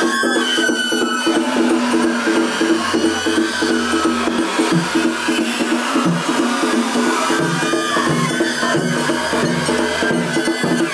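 Japanese festival hayashi music for a hikiyama float: a high flute melody over a steady, repeating beat of drums and percussion.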